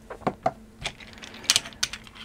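A few sharp, irregular clicks and taps as an old fused three-pin plug and its round socket are handled, the plug picked up and its pins set against the socket face; the loudest click comes about one and a half seconds in.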